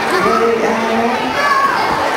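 A crowd of young children's voices at once, several overlapping, loud and steady.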